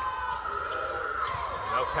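Basketball bouncing on a hardwood court during live play, several dull thuds over steady arena background noise.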